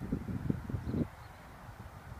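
Wind buffeting the microphone: an uneven low rumble that comes in gusts for about the first second, then drops fainter.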